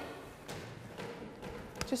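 A few faint light taps over low room hiss, the sound of small plastic containers being handled on a work table.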